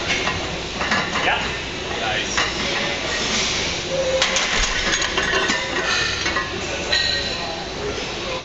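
Metal clinks of loaded barbell plates and power-rack hardware during a heavy barbell squat, with indistinct voices in a busy gym.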